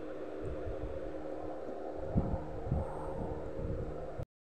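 Low rumbling background noise with a faint steady hum and a few soft low thumps, the clearest about two seconds in and again near three seconds.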